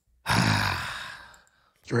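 A man's long, breathy sigh that fades away over about a second.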